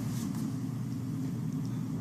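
A steady low hum that holds at an even level, with nothing else standing out.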